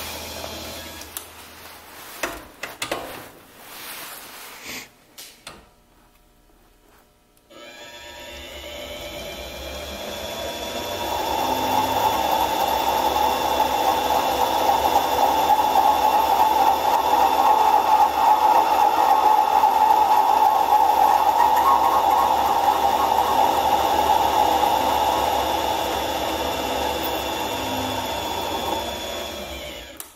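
Grizzly mini lathe starting up about eight seconds in with a rising whine, then taking a cut through a yellow resin-like coating on a spinning workpiece, the cutting noise loud and steady, dying away just before the end. A few knocks come in the first seconds, before the motor starts.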